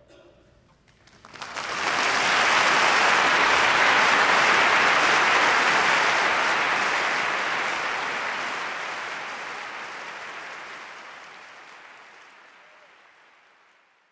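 Concert audience applauding: the applause breaks out about a second in, holds at full strength for a few seconds, then fades slowly away.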